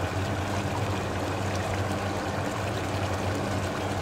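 Steady sizzling hiss of bone-in chicken cooking in oil and its own juices in a large metal pot, with a low steady hum underneath.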